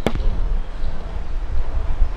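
Microphone handling noise: a sharp click at the start, then low rumbling and small knocks as the microphone is touched and bumped.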